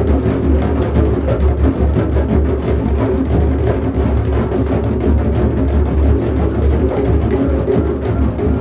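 Drumming: drums played together in a steady, dense stream of strokes with a deep low end, without a break.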